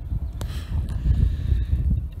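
Wind buffeting the microphone: an uneven, gusting low rumble, with a single sharp click a little under half a second in.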